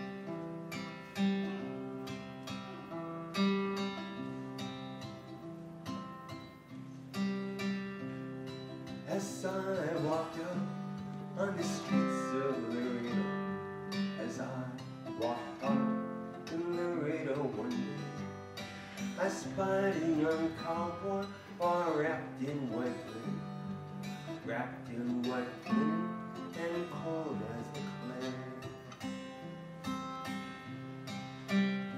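Acoustic guitar playing a chordal accompaniment, with a man's voice singing or humming over it from about nine seconds in until near the end.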